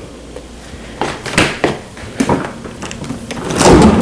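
Stainless-steel refrigerator being handled: a few knocks and clicks from the door and shelves, then the bottom freezer drawer sliding open near the end.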